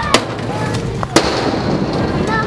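Two sharp bangs of a stunt scooter striking a stainless-steel skatepark obstacle, about a second apart, the second slightly louder, over the low rumble of its wheels rolling on metal.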